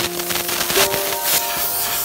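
Compressed-air gun blowing snow off skis and a snowboard: a loud hissing rush of air that comes in uneven bursts.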